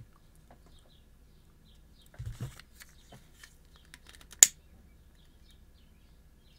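Quiet room tone with faint scattered ticks, a brief low sound a little after two seconds in, and one sharp click about four and a half seconds in.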